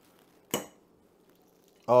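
A metal fork clinks once against a bowl, about half a second in, as it digs into a crispy-skinned pan-fried salmon fillet.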